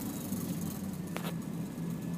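Radio transceiver's receiver hissing with a steady low hum on an open channel, with two faint clicks a little over a second in.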